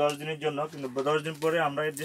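A person talking steadily in a fairly low, level-pitched voice.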